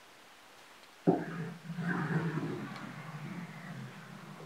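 Shuffleboard puck slid up a wooden table: a sharp knock about a second in, then a low gliding rumble that slowly fades.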